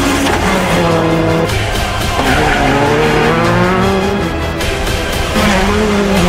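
Rally cars at full throttle on a gravel stage, the engine pitch climbing and dropping with sharp breaks at the gear changes, over a music track.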